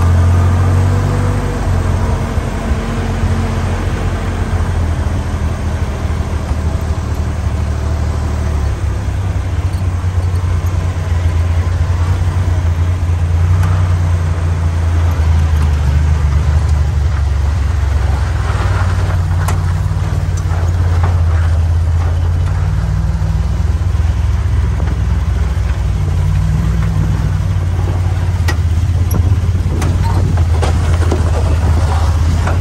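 Willys CJ2A Jeep's four-cylinder flathead engine running at low trail speed, its pitch rising and falling as the throttle changes. Scattered knocks and rattles come through a little past halfway.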